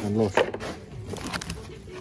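A man's voice says "leer" once, then a few light clicks and taps as gloved hands handle a plastic knee pad.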